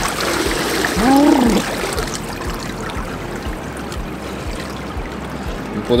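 Swimming-pool water splashing and sloshing around a man who has just jumped in, with a short rising-and-falling yell about a second in; the water then settles to a quieter steady lapping and trickling.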